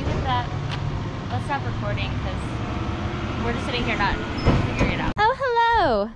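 A steady low engine-like rumble, as of a motor vehicle running, under faint quiet voices. It cuts off abruptly about five seconds in, and a loud, lively woman's voice takes over.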